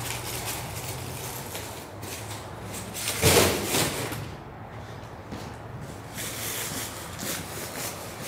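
A shrink-wrapped case of plastic water bottles being set down with a crinkling thump about three seconds in, the loudest sound here, amid lighter rustling and footsteps as the cases are handled and carried.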